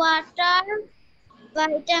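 A child's voice reciting words slowly in drawn-out, sing-song syllables: two held syllables, a short pause, then two more near the end.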